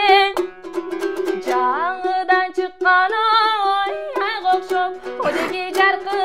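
A woman singing, accompanying herself on a komuz, the three-stringed fretless Kyrgyz lute, strummed in quick strokes. Her held notes waver, and the strings keep sounding one steady low note underneath.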